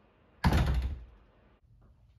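An interior door slammed shut about half a second in: one loud, heavy thud that dies away within about half a second.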